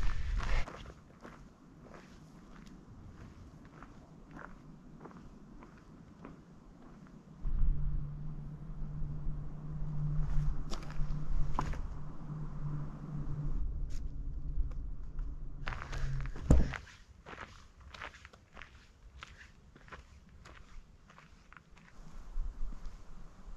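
Footsteps on a dry forest trail of dirt and grass, a scatter of short crunches and clicks. From about eight seconds in, a steady low hum runs under them for about nine seconds, ending with one sharp knock.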